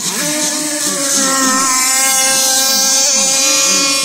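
Nitro RC racing boats' small two-stroke glow engines running at high revs as the boats plane past: a steady high-pitched whine with a second engine's lower pitch wavering up and down underneath.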